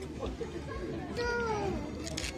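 A cat meowing: one drawn-out call falling in pitch, about a second in, over background chatter.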